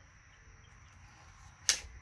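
A clear plastic acetate overlay page in a picture book being flipped over, giving one short, sharp snap about three-quarters of the way through, against faint background noise.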